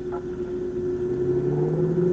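A steady low hum, joined about halfway through by a deeper drone that rises slightly in pitch and grows louder.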